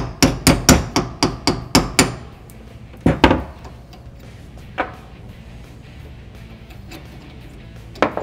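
Hammer tapping a pin punch to drive the roll pin out of the oil-pressure relief valve in an aluminium Harley-Davidson Twin Cam cam plate: a quick run of about a dozen sharp metallic taps over two seconds, then a couple more a second later and a last single tap near the middle.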